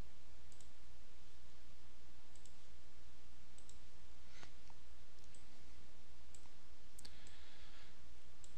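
Computer mouse clicks, faint and scattered at irregular intervals, over a steady low electrical hum.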